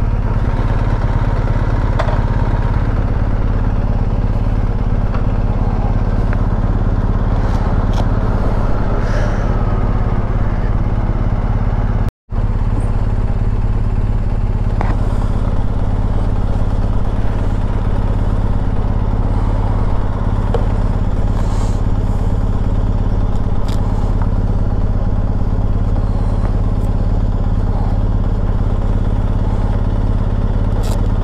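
BMW R1250 GS Rallye TE's boxer twin idling steadily while the bike stands in neutral, with a momentary dropout in the sound about twelve seconds in.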